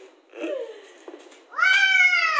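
A toddler's high-pitched excited squeal that arches up and slowly falls in pitch, starting about a second and a half in, after a softer short call near the start.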